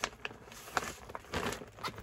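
Clear plastic kit bag crinkling and a paper pattern sheet rustling as the bag is opened and the sheet is pulled out, in short irregular crackles with quiet gaps between them.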